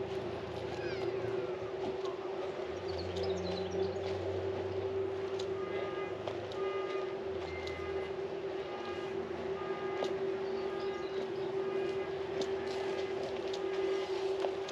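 A steady hum held at one pitch, over outdoor background noise with scattered faint clicks and short faint higher tones.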